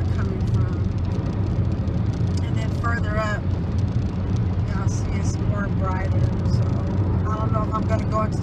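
Steady low rumble of road and engine noise heard inside a car cruising on a freeway. A voice is heard briefly a few times.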